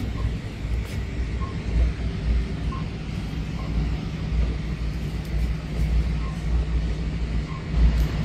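Low, uneven rumble of a handheld phone microphone being carried and jostled while walking, over a steady low hum. Faint short beeps come now and then in the background.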